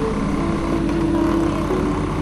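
Outboard motors of two rigid inflatable boats running steadily at speed, a continuous drone with a held tone.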